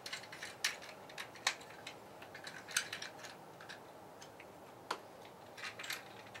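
Several faint, sharp clicks and taps at irregular intervals, the sound of a small plastic toy figure being handled and set about.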